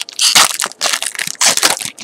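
Foil wrapper of a Pokémon TCG booster pack crinkling and tearing as it is pulled open by hand, in three or four loud rustling bursts.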